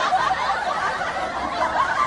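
People laughing.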